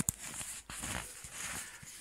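A sharp click, then faint rustling and small clicks of handling.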